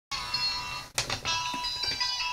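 GPX portable DVD player's start-up jingle: a short run of bright electronic chime notes from its small speaker, with a couple of clicks about a second in.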